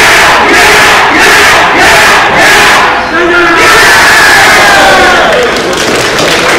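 A team of junior-high baseball players shouting a rhythmic yell together, loud, in short phrases with brief breaks between them.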